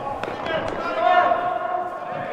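Football players shouting to each other across a large indoor hall. Two short knocks of a football being kicked come early on.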